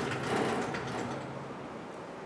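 Chalk writing on a blackboard, a soft scratchy sound as an equation is written out.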